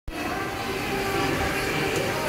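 Kiddie carousel turning, a steady mechanical rumble with a few faint held tones over it.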